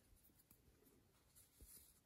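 Near silence: faint rustling of crocheted yarn being handled and pulled through stitches, with a few soft ticks about halfway and near the end.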